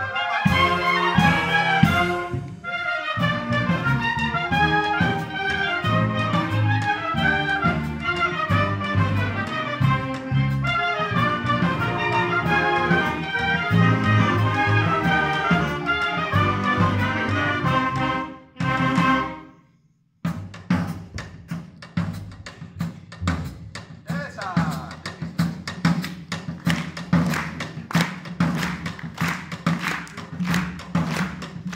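A student concert band of brass and woodwinds plays with a drum kit. After a brief break about two-thirds of the way in, the drum kit's strokes lead over a lighter band sound.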